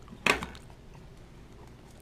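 Plastic-wrapped stacks of silver rounds being handled: one sharp crackle of plastic about a quarter second in, then faint scattered clicks and rustles.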